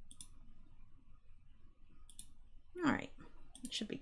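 Computer mouse clicks: single sharp clicks at the start and about two seconds in, then a few more near the end.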